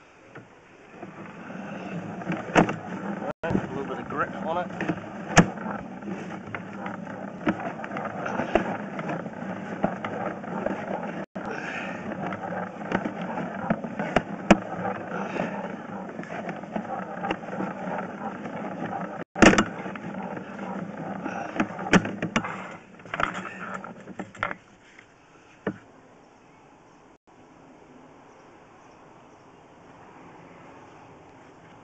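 Push-rod cable of a drain inspection camera being hauled back out of the pipe: continuous scraping and rattling with frequent sharp clicks and knocks, dying away about 24 seconds in.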